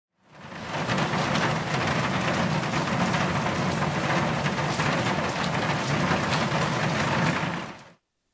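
Heavy rain pouring down: a dense, steady hiss of countless drops that fades in over the first second and fades out just before the end.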